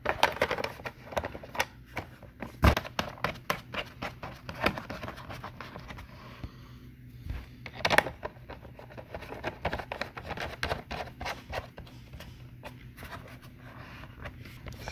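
Plastic clicks, taps and light scraping from a welding helmet's shell and auto-darkening filter cartridge being handled and fitted in its frame, with sharper clicks near 3 seconds and near 8 seconds in.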